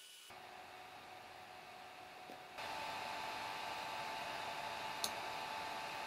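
Steady hiss of room noise on the microphone, stepping up louder about two and a half seconds in, with a single sharp computer-mouse click near the end.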